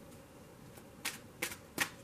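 A deck of tarot cards being handled and shuffled: three short, sharp card snaps in the second half, about half a second apart, over quiet room tone.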